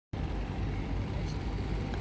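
Steady low rumble of a river boat's engine running while under way, with no change through the moment.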